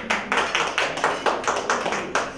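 Fast, even handclaps, about four to five a second, with faint low musical tones underneath.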